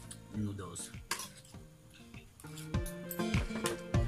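Metal spoon and fork clinking and scraping against a plate while eating, several sharp clinks, over guitar background music.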